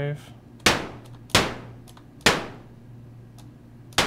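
Behringer Neutron analog synthesizer firing short white-noise bursts, three about a second apart and a fourth at the end. Each starts sharply and decays, its highs fading first as the filter envelope closes, mimicking a small room's reverb tail for an impulse response. A steady low hum sits underneath.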